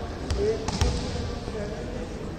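A volleyball striking with a few sharp smacks, three within the first second, over a bed of voices.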